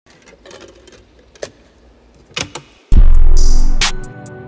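Opening of a Florida-style trap instrumental beat: a faint, sparse intro with a few soft clicks, then about three seconds in a loud deep bass and drums come in suddenly.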